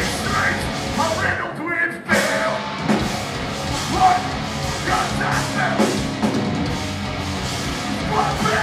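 A heavy metal band playing live with distorted guitars and a drum kit, cutting out for a split second about two seconds in before coming back in.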